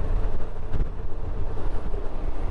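Strong wind hitting the microphone in a steady low rumble, over the running of a Honda Gold Wing GL1800 motorcycle's flat-six engine and tyres at road speed.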